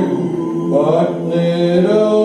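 Male doo-wop vocal group singing close harmony on held vowels without words, with the upper voices sliding up about a second in.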